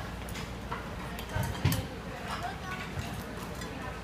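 Restaurant table noise: scattered clicks and clinks of chopsticks, ladles and dishes against a murmur of voices and a steady low room hum, with one louder clack about one and a half seconds in.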